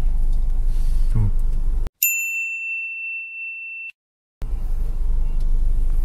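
Car cabin rumble, cut off about two seconds in by a single high, clear ding sound effect that rings and fades for about two seconds. A moment of dead silence follows before the cabin rumble comes back.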